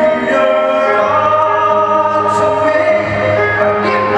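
A man singing a slow ballad live into a microphone over musical accompaniment, holding one long note through the middle.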